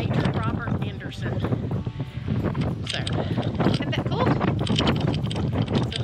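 Strong wind buffeting the microphone with a heavy, low rumble, and a woman's voice talking through it.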